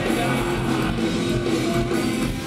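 Punk rock band playing live: electric guitars and drum kit at a steady loud level, with the singer's vocals.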